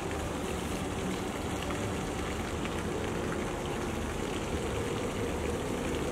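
Steady, even background noise with no distinct events, like room or outdoor ambience.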